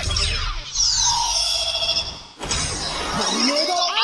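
Kamen Rider transformation-belt sound effects over music. A sudden burst opens it, followed by falling sweeps in pitch and a brief cut-out a little past halfway. Near the end come rising-and-falling synth tones.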